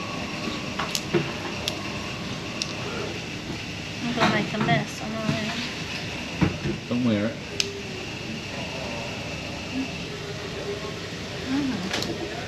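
Café background with a few short, quiet bits of speech, a thin steady high hum through most of it, and a few light clicks.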